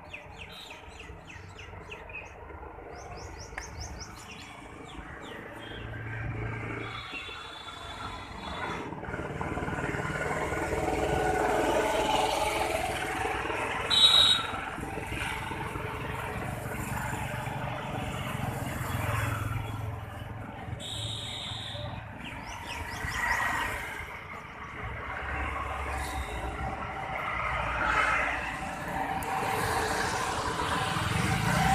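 Street ambience: road traffic passing, swelling and fading, with birds chirping in the first seconds. Two short, loud high beeps come about halfway through and again about two-thirds of the way in.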